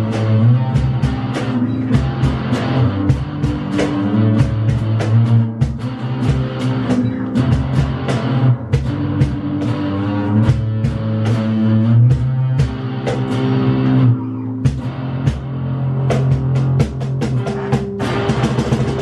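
Instrumental rock-style music: electric guitar played over a steady drum kit beat.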